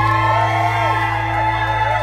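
Live rock band holding one sustained, droning chord at the close of the song, with sliding, wavering pitches over it.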